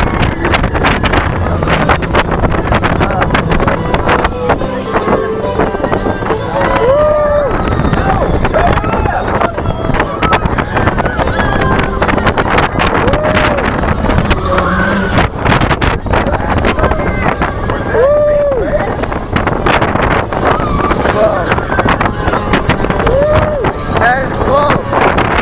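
A launched steel roller coaster train running at speed: a steady rush of wind on the microphone over the rattle of the train on the track. Riders let out short rising-and-falling whoops several times, about every few seconds.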